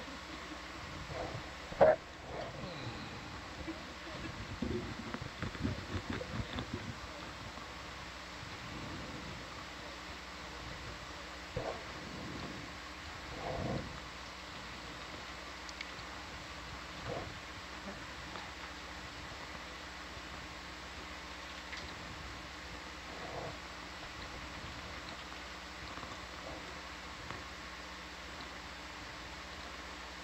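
Steady electrical hum of the control-room audio feed, with faint scattered clicks and crackles; a sharp click about two seconds in is the loudest sound, and a cluster of short crackly sounds follows a couple of seconds later.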